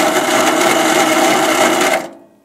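Electric starter on an Onan NB engine cranking the engine over at a steady speed, with the spark plug removed so it spins freely without compression and does not fire. It cuts off near the end.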